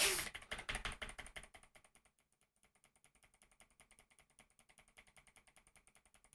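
The music fades out over the first two seconds, then faint, scattered clicks of a computer keyboard being tapped.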